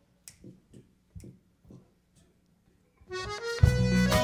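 A few faint, scattered clicks, then about three seconds in a country band starts the song's intro. A held chord swells up, and the full band comes in loudly half a second later.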